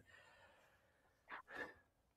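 Near silence on a video call, with one brief faint sound, about a second and a half in.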